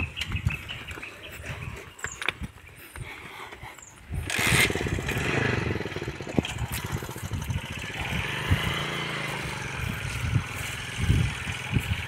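A motorcycle engine running as it passes on the road, coming in sharply about four seconds in and carrying on steadily. Before it, a few scattered knocks of hooves on the asphalt.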